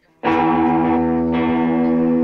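Distorted electric guitar chord struck suddenly about a quarter second in and left ringing loud and steady through the amplifier, with a fresh strum a little past a second in.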